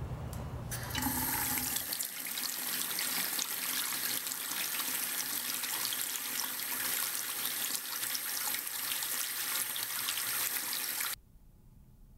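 Chrome faucet running, a steady stream of water pouring into a sink; it starts about a second in and cuts off suddenly near the end.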